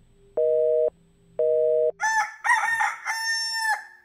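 Telephone busy signal beeping twice, a pair of steady tones sounding about once a second, then a rooster crowing cock-a-doodle-doo in three parts, louder than the beeps.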